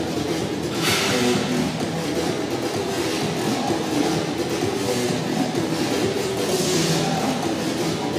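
Music playing, a rock song with guitar.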